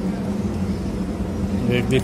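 Steady low engine-like machine hum, with a man's voice starting just before the end.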